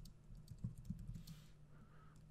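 Faint, irregular keystrokes on a computer keyboard: a quick run of taps typing out a terminal command.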